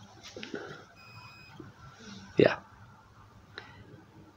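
Soft fabric rustling as a neck-gaiter face covering is pulled down, with a faint, short, high electronic beep about a second in. A man says 'yeah' midway, and there is a small click near the end.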